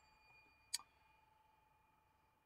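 A silver desk call bell rung once: a short, sharp ding about three-quarters of a second in, its tone ringing on faintly.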